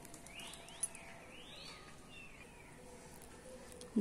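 Faint birdsong outdoors: a few sweeping chirps in the first second and a half, with a single light click near the first second, over quiet garden ambience.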